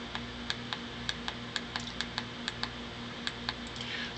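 Small push buttons on a PWM signal generator module pressed repeatedly by a fingertip: a quick, irregular run of light clicks, several a second, stepping the duty cycle down from 100% toward 90%. A low steady hum runs underneath.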